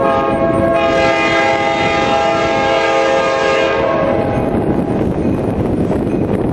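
Locomotive's Nathan Airchime K5LA air horn sounding one long blast of about four seconds. It is a chord of several steady tones that fills out just under a second in.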